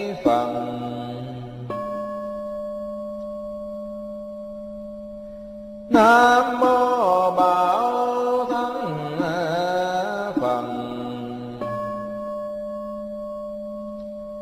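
A Buddhist bell struck twice, each strike ringing on with steady tones that fade slowly over several seconds. Between the two strikes a monk chants a Buddha's name in Vietnamese, the call-and-bell pattern of a repentance liturgy.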